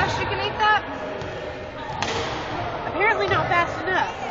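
Voices and chatter in a large gym hall, with a single thud about two seconds in.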